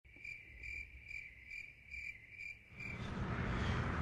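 A row of short, high, evenly spaced chirps, about two a second and seven in all, like a cricket chirping. Shortly before three seconds in they stop and a rising rush of outdoor wind noise takes over.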